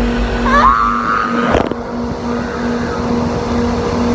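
Bus cabin noise: a steady engine rumble with a constant hum. About half a second in, a short rising whine-like sound, and a sharp knock about a second and a half in.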